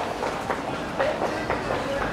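Steady rumbling noise with a faint click about every half second, and faint voices.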